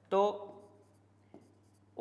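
A single spoken word, then faint scratching of a pen writing on a board, with a light tap about a second and a half in.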